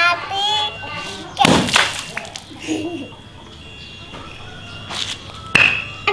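A water balloon bursting with a sharp pop as a plastic toy hammer strikes it, about a second and a half in, its water splashing onto the concrete. Another sharp knock comes near the end.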